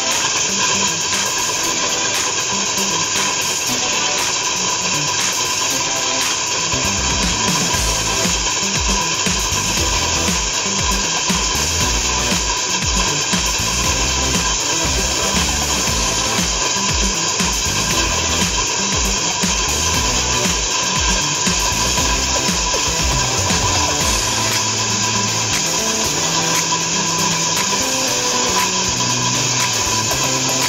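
Stand-mounted diamond core drill running steadily as its water-fed core bit bores into a concrete wall, under background music.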